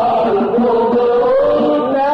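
Unaccompanied-sounding chanting of an Islamic nasheed: a sustained vocal line gliding through long, ornamented melodic phrases without a break.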